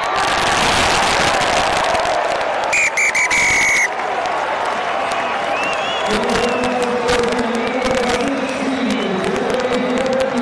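Rugby stadium crowd cheering loudly. About three seconds in, a referee's whistle sounds: two short pips, then a held blast of about a second. From about six seconds, drawn-out voices rise over the crowd noise.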